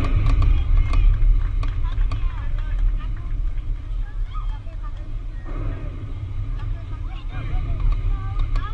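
Scattered voices of spectators and players calling and chatting over a steady heavy low rumble, with a few sharp clicks early on.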